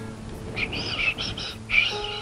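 Background music holding steady notes, with a quick run of high-pitched squeaky chirps starting about half a second in: a sock puppet's gibberish voice.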